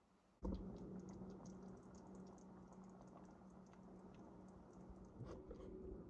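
Faint scattered light clicks and ticks over a low, steady hum, starting abruptly about half a second in.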